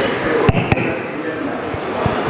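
Low chatter of several voices at once in a large hall, with two sharp knocks about half a second in, a quarter of a second apart.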